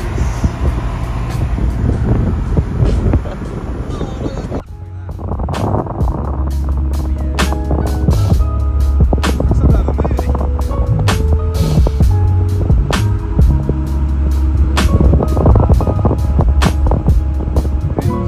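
Road and wind noise from cars travelling at motorway speed with the windows open. About four and a half seconds in, it cuts abruptly to music with a heavy bass and a steady beat, which then continues.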